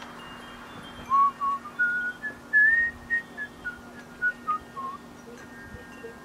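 A person whistling a short tune, clear notes climbing and then falling back down, over a steady low hum.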